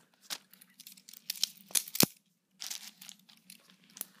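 Scattered clicks and light knocks of metal balisong trainers being handled and swung open, with some crinkling of plastic. One sharp click about two seconds in is the loudest.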